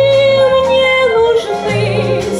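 A woman singing one long held note into a microphone over instrumental accompaniment with a bass line; a little past halfway the note drops to a lower pitch.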